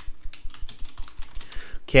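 Computer keyboard typing: a fast run of key clicks as a short phrase is typed out.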